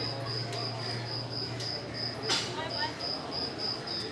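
A cricket chirping steadily, short high chirps about four a second, with one sharp click about halfway through.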